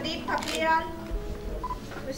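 A person speaking, with faint background music.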